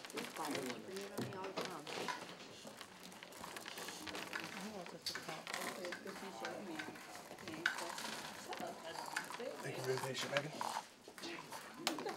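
Low chatter from several students, with the light clicking and rattling of Skittles as they are poured from small cups and spread out on paper to be counted.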